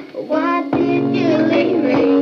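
Young girls singing along with a recorded pop song, the backing music holding steady low notes beneath their voices. There is a brief dip in the sound right at the start.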